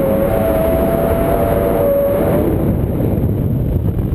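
Wind rushing over the camera microphone on a tandem paraglider in flight, a loud steady buffeting. A thin steady whistle, wavering slightly in pitch, sits over it and stops about two and a half seconds in.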